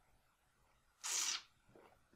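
A person's short breathy exhale about a second in, after a sip from a mug, with near silence before it.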